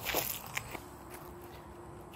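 A brief rustle and a soft knock near the start, like footsteps or handling, then a faint steady low hum.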